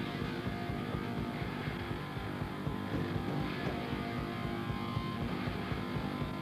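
Heavy metal band playing live: a drum kit beating fast with rapid bass-drum strokes under distorted electric guitar and bass, all running on without a break.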